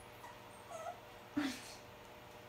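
Small puppy whimpering: a faint short whine a little under a second in, then a louder, brief whine about halfway through.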